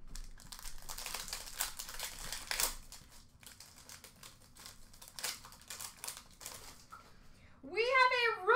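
Crinkling and rustling of trading-card pack wrappers and packaging being handled, in quick irregular crackles, busiest in the first few seconds and thinning out later.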